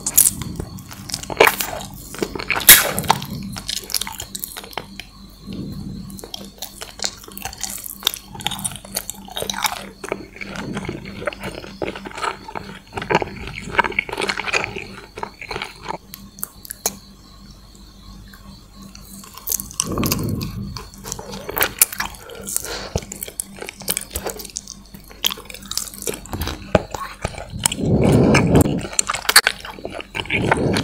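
Close-miked mouth sounds of licking, sucking and biting a gummy candy on a stick: irregular wet smacks and sticky clicks, with a few louder chewing bursts near the end.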